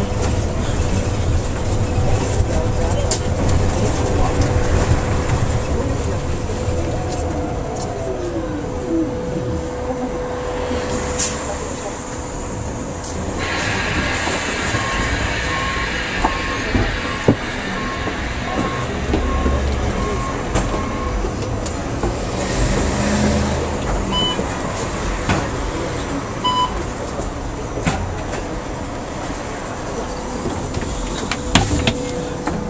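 Inside a moving San Francisco Muni vehicle: low running rumble with a steady whine that glides down in pitch as it slows, under passengers' chatter. Partway through, a regular series of short electronic beeps sounds, about nine in six seconds, with a couple of single beeps later.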